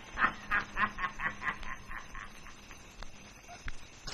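A man laughing in a quick run of short chuckles, about three a second, fading away over two seconds.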